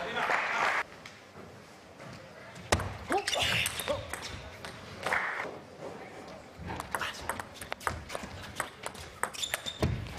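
Table tennis play: the plastic ball clicking sharply off the table and the rackets in quick, irregular hits, thickest in the second half. Short bursts of applause and cheering from the crowd come between points.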